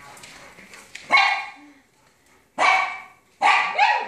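A dog barking three times, in short loud barks spaced about a second apart; the last one trails off falling in pitch.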